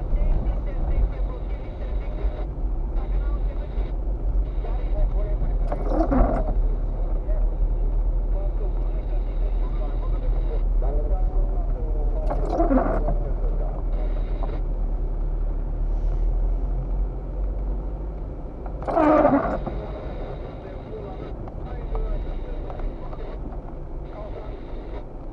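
Car cabin sound from a dashcam: a steady low engine and road rumble, with a windshield wiper on intermittent setting sweeping the wet glass three times, about six and a half seconds apart.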